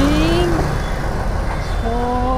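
Steady road-traffic noise from cars and buses on a busy city road, with a drawn-out syllable of a man's voice fading out in the first half second.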